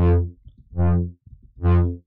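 Brass-style synth lead from the Vital software synthesizer, a sawtooth patch run through distortion and chorus, played as three short notes about half a second each, evenly spaced, with a bright buzzy tone.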